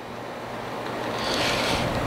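Water running and growing steadily louder as hands are wetted so the sausage meat won't stick.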